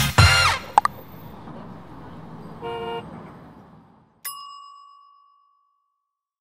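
Background music cuts off in the first half second, followed by a short car-horn toot about two and a half seconds in and a single bright ding about four seconds in that rings out for about a second: logo sound effects.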